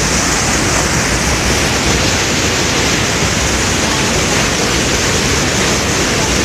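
Floodwater from a rain torrent cascading over rocks close by: a loud, steady rushing of water.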